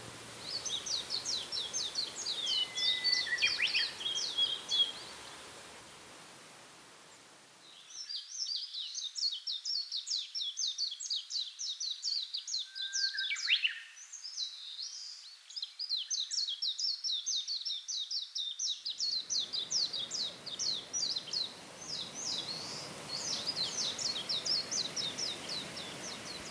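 Small songbirds singing in rapid, high chirping phrases over a faint outdoor hush. The song fades away about five seconds in and picks up again a couple of seconds later, continuing busily to the end.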